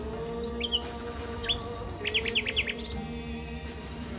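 A songbird giving a few quick high chirps, then a fast run of about a dozen short, sharp notes in the middle, over soft background music with long held notes.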